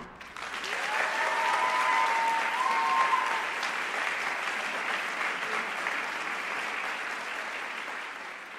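Audience applause for a choir, building about a second in and then slowly fading. A short cheer rises over the clapping early in the applause.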